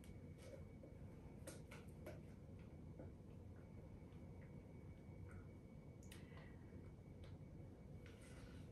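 Near silence with faint, scattered light ticks and scrapes: a spatula scraping thick ice cream mixture out of a glass bowl into a glass container.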